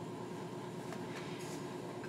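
Steady, faint background noise of a room: an even hiss and rumble with a faint steady hum, unchanging throughout.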